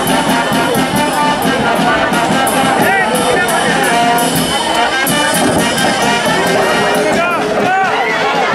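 Brass band music playing, with a crowd's shouts and voices mixed in.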